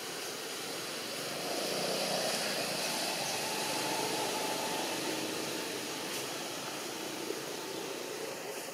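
Steady hum of a motor engine, swelling about a second and a half in and easing off toward the end.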